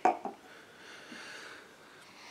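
A short knock right at the start, then a man taking one long sniff through his nose.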